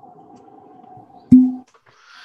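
Cork stopper pulled from a bottle of Heaven Hill's Square 6 bourbon: one loud pop a little over a second in, followed by a short hollow ring from the bottle.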